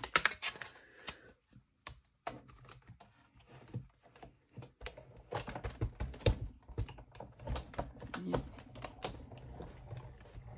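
Clear plastic cutting plates clacking as they are handled and stacked, then a Sizzix Big Shot die-cutting machine being hand-cranked to feed a die sandwich through its rollers: a run of irregular clicks and knocks, busier in the second half.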